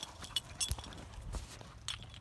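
Faint scattered clicks and soft thumps as a dog runs off across grass.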